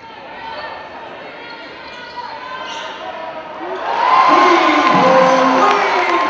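Indoor basketball game sound: a basketball bouncing on a hardwood court amid voices of players and spectators. The voices grow louder and more shouted about four seconds in.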